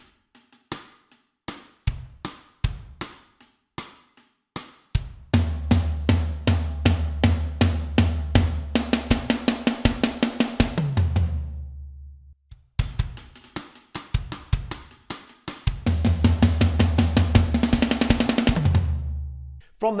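Electronic drum kit playing a pop-punk pre-chorus: spaced kick and snare hits, then a dense build-up of fast snare strokes with cymbals that stops short. The passage is played through twice.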